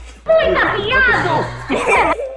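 A child's high-pitched, excited voice with no clear words, over background music.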